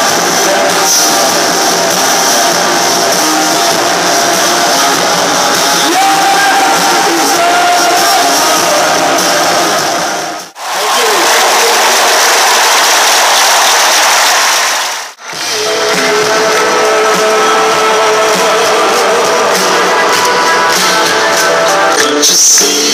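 Loud live band music with crowd noise, heard through a phone's microphone. The sound cuts off abruptly twice, at about 10 and 15 seconds in. The stretch between the cuts is a dense, even wash of crowd noise.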